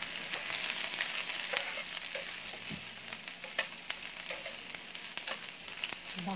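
Chopped garlic sizzling in hot oil in a nonstick frying pan, stirred with a metal spoon: a steady high hiss with scattered sharp ticks from the spoon and spatter.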